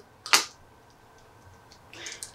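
One sharp click as small 3D-printed resin parts of a 1/6 scale toy rifle are snapped together by hand, followed by a few faint handling ticks near the end.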